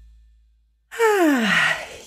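A person's long, audible sigh, voiced with breath, its pitch falling steadily over about a second, starting about a second in as the last low note of the intro music dies away.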